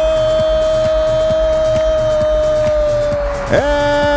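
A football commentator's long drawn-out goal cry, held on one note that sinks slowly, breaking about three and a half seconds in and starting again. Background music with a steady beat runs under it.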